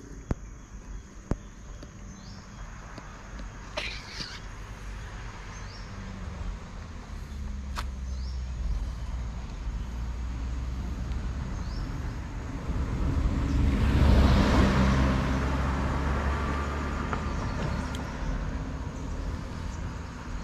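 A motor vehicle passing on the road: its engine and tyre rumble grows louder to a peak a little past halfway and then fades away. A steady high insect drone runs underneath.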